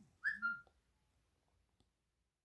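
Two brief high-pitched whistle-like chirps, one right after the other, followed by a faint click near the end.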